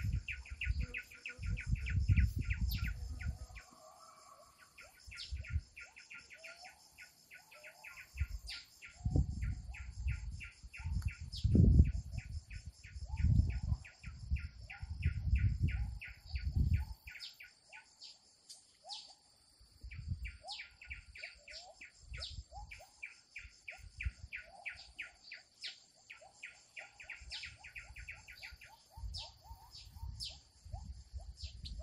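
Outdoor birdsong: small birds chirping, with long runs of rapid repeated ticking notes several times a second and short falling chirps, over a steady high-pitched hiss. Bursts of low rumble come and go through the first half and are the loudest sound there.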